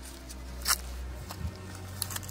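Footsteps going down a grassy slope, with a sharp crackle underfoot about a third of the way in and a softer one past halfway, over low droning background music.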